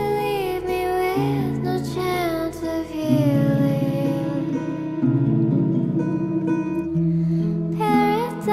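Soft pop song: a woman's sung melody in long, gliding notes over guitar chords.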